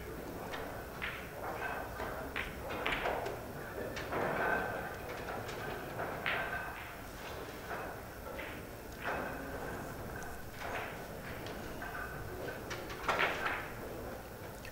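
A pool shot on a straight pool table: the cue tip strikes the cue ball, followed by clicks of ball on ball. Scattered faint knocks follow over the hum of a quiet hall.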